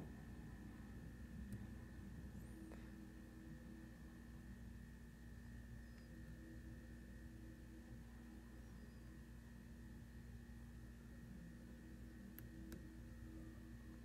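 Near silence: a steady faint hum, with a few faint clicks, two close together near the end, from a disk-detainer pick and tensioner working the rotating disks of an Anchor Las 810-1 padlock.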